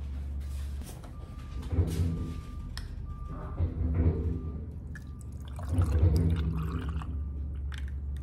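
Milk glugging out of a plastic gallon jug as it is poured over ice into a glass, in gulping bursts, the loudest about six seconds in. A low hum stops about a second in.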